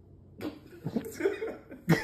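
Breathy laughter in short, uneven bursts, starting about half a second in and ending in a louder burst near the end.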